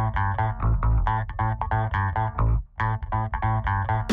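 Background music: a plucked guitar playing quick repeated notes over a bass guitar line, with a brief pause about two and a half seconds in.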